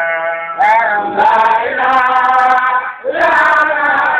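Men chanting a Baye Fall Sufi zikr, the devotional repetition of God's name, in long held, wavering sung phrases. A fresh phrase starts just after half a second and again about three seconds in.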